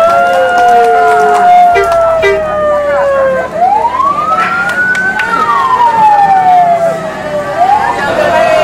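Vehicle siren wailing in slow rising and falling sweeps, with a second overlapping siren tone, over a low engine hum.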